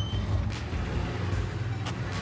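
Steady low hum of a running vehicle engine, with two brief clicks: one about half a second in and one near the end.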